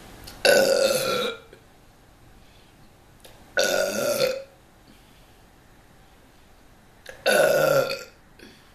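A woman burping loudly three times, each a long burp of nearly a second, spaced about three and a half seconds apart.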